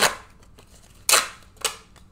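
Three short, sharp noises from paper scratch-off lottery tickets being handled on the table, the loudest a little after a second in.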